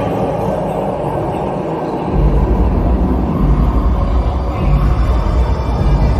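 A deep, loud rumble from a stage show's soundtrack over loudspeakers. It swells in about two seconds in, under faint music, building towards eerie show music.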